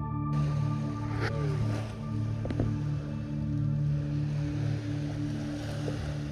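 Background music of steady, sustained low notes layered together.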